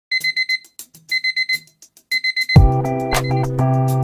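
Digital alarm clock beeping in three bursts of four quick, high beeps, about a second apart. About two and a half seconds in, music with a steady bass and drum hits starts up.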